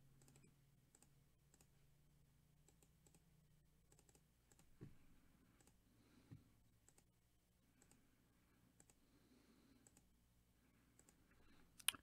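Near silence with faint, scattered computer mouse clicks; two slightly louder clicks come about five and six seconds in.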